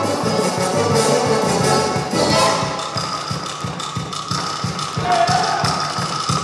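Russian folk dance music with a quick, steady beat, accompanying a Cossack ensemble's stage dance; it drops a little in level about two seconds in.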